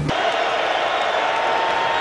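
Steady crowd noise from a football stadium crowd.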